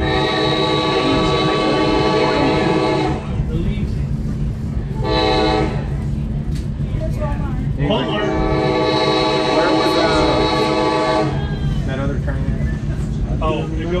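Train air horn sounding a long blast, a short one and another long one for a road crossing, over the steady rumble of the moving passenger car.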